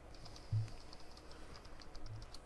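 Faint typing on a computer keyboard: light, irregular key clicks, with one soft low thump about half a second in.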